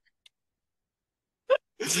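A man's laughter: a pause, then one short, sharp outburst of laughter about a second and a half in, running straight into laughing speech near the end.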